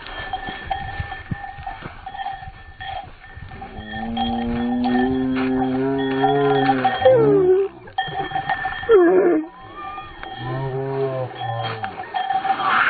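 Two long, low, drawn-out vocal cries. The first is held at a steady pitch for about three seconds and ends in a falling slide. The second is shorter, near the end, with a brief gliding call between them.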